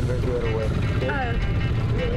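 A voice speaking in Spanish over a steady low rumble.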